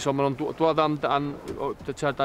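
Speech only: a man talking in Welsh.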